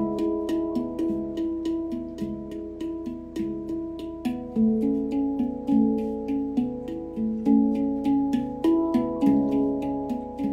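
Steel handpan played with the fingers: a continuous run of quick strikes, several a second, each note ringing on under the next so the tones overlap in a shifting melodic pattern.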